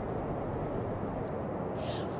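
Steady outdoor background noise on a live street microphone: an even, low rumble and hiss with no distinct events.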